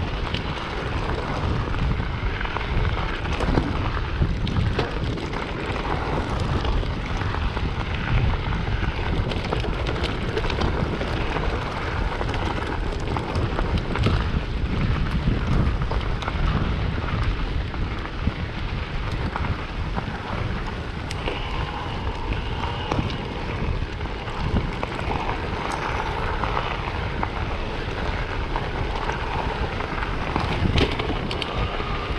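Wind buffeting the microphone of a mountain bike mounted camera, over the crunch of tyres rolling on loose gravel and small rattles from the bike.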